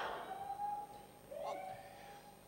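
Faint voices in a large room, with two brief held notes and a lull between them.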